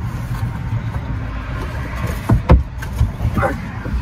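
Heavy hinged bed platform, built from wooden desktops, being lifted open: two sharp knocks close together about halfway through, over a steady low hum.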